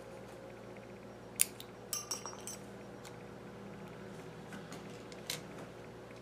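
Small hard clicks and clinks of a plastic phone cover and a spudger being handled on a partly disassembled smartphone. There is a sharp click about a second and a half in, a quick cluster of clicks around two seconds, and a few lighter taps later, over a faint steady hum.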